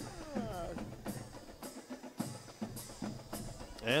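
Drums playing: a run of separate beats with a deep bass drum among them, heard across the stadium.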